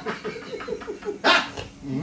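Men laughing: a quick run of short 'ha-ha' pulses, then a loud breathy burst of laughter a little past a second in and another near the end.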